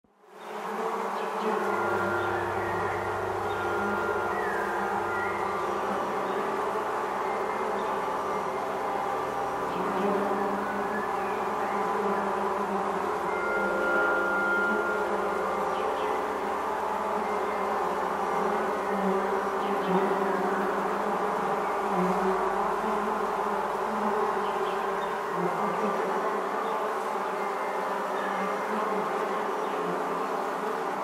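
Honeybee swarm buzzing: a dense, steady hum of many bees that fades in over the first second, with a few steady low tones beneath it.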